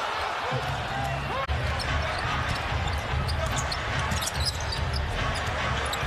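Basketball arena game sound: a steady crowd murmur filling the hall, with a basketball being dribbled on the hardwood court.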